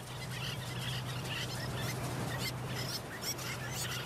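A flock of terns calling: scattered short, high chirps over a low steady hum.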